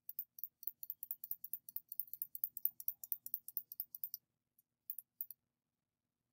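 Computer mouse clicking rapidly, about seven short, light clicks a second for some four seconds, then three more clicks about a second later.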